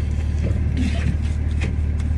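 Steady low drone of a Dodge Ram pickup's engine idling, heard from inside the cab, with light rustling as a cap and hoodie are adjusted.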